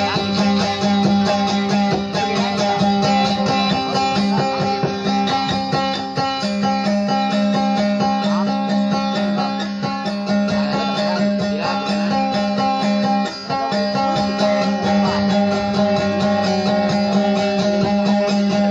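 Guitar playing a continuous instrumental dayunday passage: quick plucked notes over a steady low drone, with a brief dip in loudness about two-thirds of the way through.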